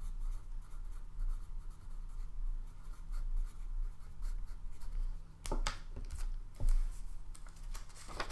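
Paper handling: faint scratching and rubbing of sheets with two louder knocks past the middle, over a steady low hum.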